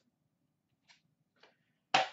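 Near silence with two faint, short ticks from hands handling a pack of trading cards, about a second in and half a second later.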